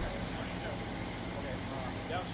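Street ambience: faint distant voices over a steady low hum of vehicles.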